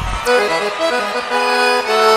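Solo accordion playing a melody with no accompaniment, opening a sertanejo song; it starts about a quarter second in with sustained notes.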